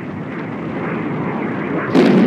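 Jet engine noise, a dense rushing sound that grows steadily louder and jumps sharply louder just before the end.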